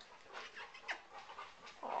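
Faint dog sounds: soft, breathy panting strokes, with one short squeak about a second in.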